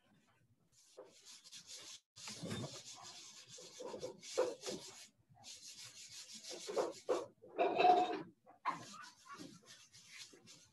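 Rustling and rubbing noise close to the microphone, in short, irregular scratchy strokes, like hands handling paper or objects at a desk.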